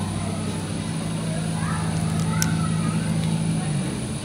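Crayon spin-art machine's turntable motor humming steadily, stopping shortly before the end, with faint voices in the background and a single sharp click about halfway through.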